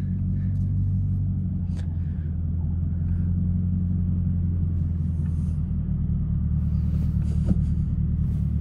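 Supercharged 6.2-litre LT4 V8 of a Chevrolet Camaro ZL1 1LE running at low, steady revs, heard from inside the cabin as an even low drone. A few faint ticks sit over it.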